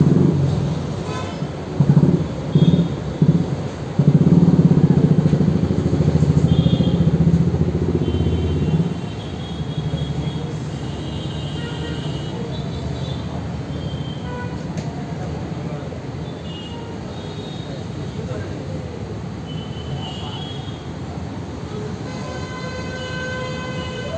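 Steady low background rumble, louder for the first nine seconds, with a few short high tones and faint indistinct voices.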